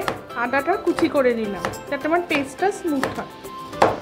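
A knife slicing through fresh ginger root onto a plastic cutting board, about six separate cuts at a slow, even pace, with the loudest near the end, over background music.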